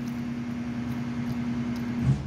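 Steady mechanical hum with one constant low tone under a wash of background noise; the tone stops at the very end.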